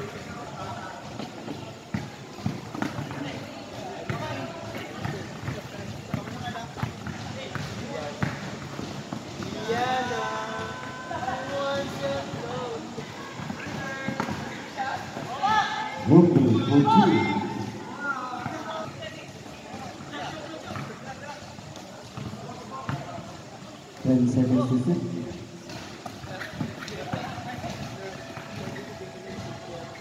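Sounds of a basketball game from courtside: a ball bouncing on the court amid shouting voices, with music in the background. Voices rise in two louder bursts, about halfway through and again near the end.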